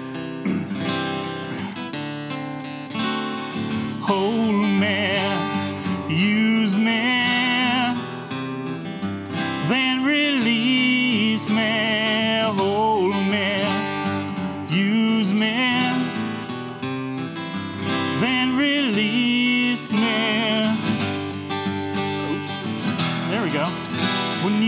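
Two acoustic guitars playing a song intro in G, strummed and picked, with a wavering melody line carried over the accompaniment.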